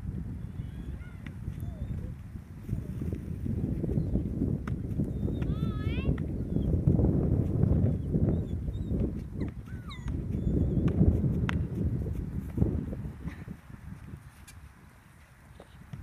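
Wind buffeting the microphone: a low rumble that swells and fades, strongest through the middle and dying down near the end, with a faint short wavering call about six seconds in.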